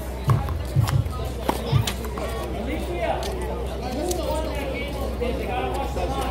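Background voices and music, with a few sharp knocks and low thumps in the first two seconds.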